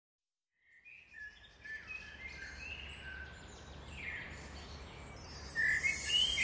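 Birdsong ambience opening an electronic track: scattered short chirps over a low steady hum, starting after about a second of silence. Near the end it grows louder as the track fades in.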